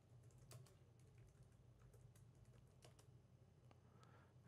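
Near silence with faint, scattered clicks of typing on a computer keyboard, over a low steady hum.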